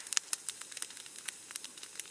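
Large wood fire in an open metal cone kiln crackling, with irregular sharp pops and snaps.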